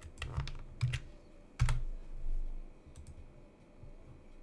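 Typing on a computer keyboard: a quick run of keystrokes in the first second, then one louder key press about one and a half seconds in, with sparse clicks after.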